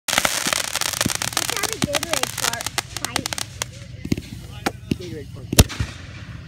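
Consumer fireworks going off: a dense run of crackling pops for about the first three seconds, thinning to scattered pops, with one loud bang near the end.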